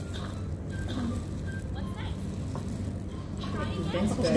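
Faint background voices over a steady low hum, with no single loud event.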